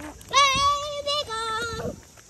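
A young child singing out two long held notes, the second lower than the first.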